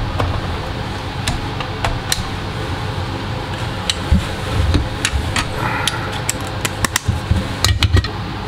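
Steady whoosh of fans blowing air around a BGA rework station with its bottom heater running, with scattered small sharp clicks throughout.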